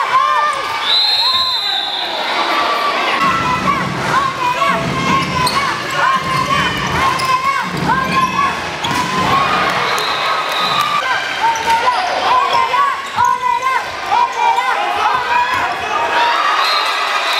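Handball game sounds on an indoor wooden court: players' shoes squeaking in many short chirps and the ball bouncing, over a murmur of crowd voices.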